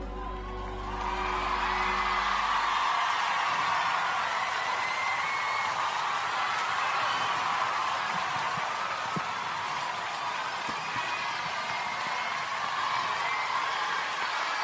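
A live concert audience cheering, whistling and applauding at the end of a song; the band's final chord dies away in the first three seconds or so.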